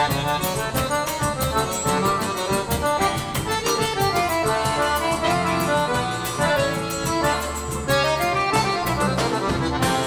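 Piano accordion (sanfona) playing a fast instrumental melody line of quick running notes, backed by a drum kit keeping a steady beat and an electric bass, in a live band.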